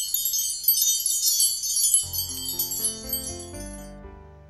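A magical sparkle sound effect of shimmering wind chimes, a dense run of high tinkling notes that fades out near the end. About halfway in, soft background music starts underneath.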